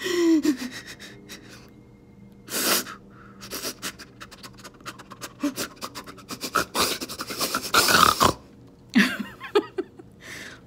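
A woman mock-crying: a falling, whimpering wail at the start, then gasping, sobbing breaths with small mouth clicks, and a long loud sobbing breath about eight seconds in.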